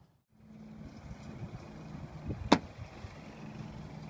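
Steady low hum of a small vehicle engine running, with a faint high whine over it, and a single sharp crack about two and a half seconds in.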